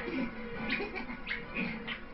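Film soundtrack music with several short, high, animal-like cries or yelps over it.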